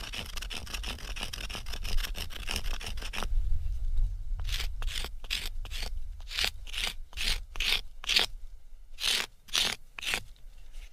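A wooden bow-drill spindle being ground against a rock to shape it: fast, continuous scraping for about three seconds, then slower separate scraping strokes, about two a second.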